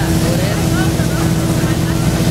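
Motorboat engine running steadily under way while towing, with the rush of wake water.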